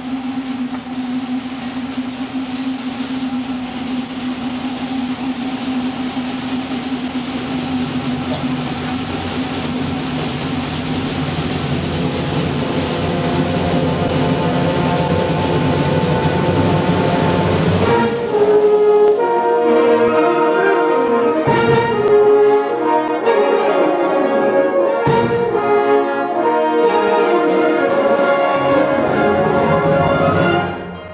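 Concert band playing: a held, full chord texture swells steadily for about eighteen seconds, then gives way to a louder brass-led passage of moving chords.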